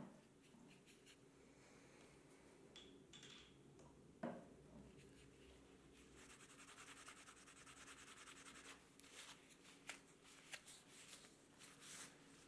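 Faint rubbing of a cloth wiping over an oiled, freshly carved wooden spoon, starting about halfway through, with a soft knock a little before.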